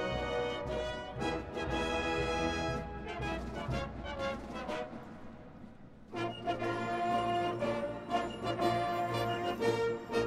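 Marching band playing, brass and percussion together. The music thins and fades to a quieter stretch about four to six seconds in, then the full band comes back in loudly with low brass about six seconds in.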